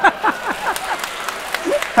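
Audience applauding, with some laughter near the end.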